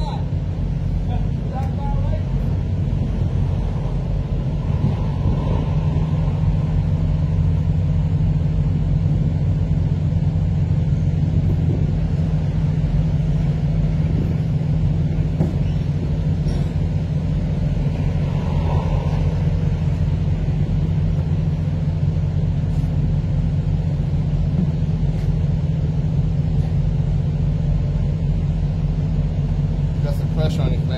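Diesel truck engine idling steadily, a low even hum that does not change.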